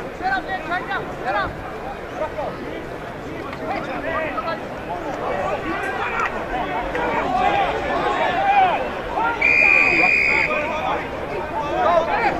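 Many overlapping shouts and calls from players and spectators across a football ground, growing louder as the play goes on. Near the end comes one steady, high whistle blast of about a second: an umpire's whistle stopping play after a tackle.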